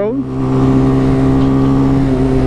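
Engine of a 2013 Chinese-made 125 cc supermoto, a replica of a Honda, running at a steady engine speed while the bike cruises, with wind noise on the microphone.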